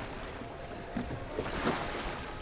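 A small fishing boat under way at trolling speed: a steady low rumble, a faint steady hum, and wind and water noise.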